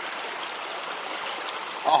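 Steady rush of creek water running over stones, with a few faint clicks in the second half.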